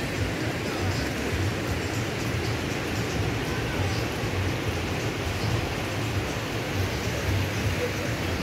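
Waves breaking on a sandy beach, a steady rush of surf, under an uneven low rumble of wind on the microphone.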